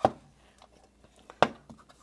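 Two sharp knocks from a small wooden chest being handled as its lid is brought shut, one right at the start and one about a second and a half in.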